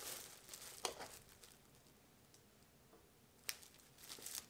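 Plastic shrink-wrap film crinkling faintly as it is handled at the sealer bar, with a sharp click a little under a second in and another near the end, and a quiet stretch between.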